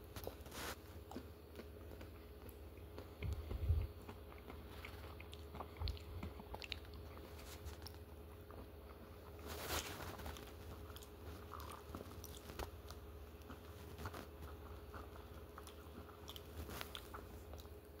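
Faint, close-up chewing with scattered small crunches as a man eats an ice cream cone.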